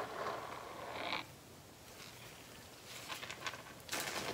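Paint-covered metal ball chain being wiped through a towel: a short, zipper-like rasping rustle over the first second, rising in pitch before it stops, then a few faint clicks near the end.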